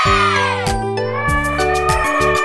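Elephant trumpeting, one call that falls in pitch, over cheerful background music.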